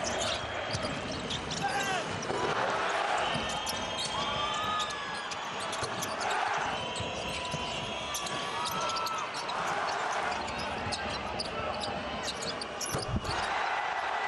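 Live basketball game sound: a ball bouncing and sneakers squeaking on a hardwood court, over steady arena crowd noise.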